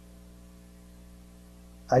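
Steady, faint electrical mains hum, a low drone with a stack of even tones, heard in a pause between a man's words. His voice comes back right at the end.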